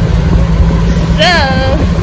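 Steady low hum of vehicle engines in street traffic, loud and close, with a woman's single spoken word over it about a second in.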